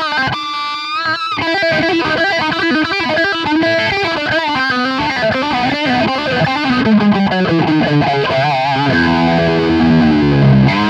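Sterling by Music Man Axis electric guitar played through a phase shifter pedal into an amp with a little gain, picking a riff. The phaser sweeps the tone up and down as the notes ring.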